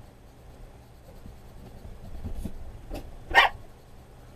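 Small dog, a Maltese, giving one short, sharp bark about three and a half seconds in.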